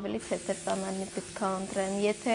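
Speech: a woman talking, with a brief hiss at the very start.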